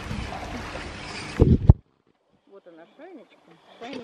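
Polar bear pool water splashing and sloshing under wind noise on the microphone, broken by two loud thumps about a second and a half in. Then the sound cuts out almost completely, leaving only faint distant voices.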